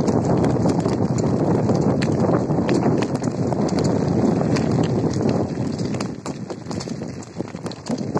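Tyres rolling over loose gravel and dirt: a dense crackle of small stones with many sharp clicks, easing off over the last couple of seconds.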